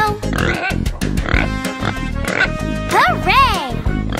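Upbeat children's song backing music with cartoon pig oinks over it, and a pitched squeal that rises and falls twice about three seconds in.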